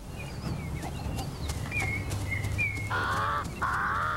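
Outdoor ambience with birds calling: thin whistled chirps that slide in pitch, over a steady low rumble. About three seconds in come two short, harsher, rasping calls.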